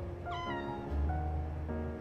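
A domestic cat's single short meow, falling in pitch and lasting about half a second, over light background music.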